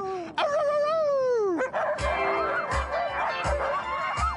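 A sled dog (husky) gives one long howl that falls in pitch. About halfway through, music with a steady beat comes in, with dogs barking under it.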